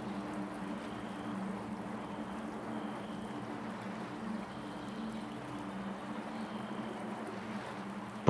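Ambient meditation backing track: a steady low drone under a soft, even water-like rushing hiss, with faint high tones that come and go.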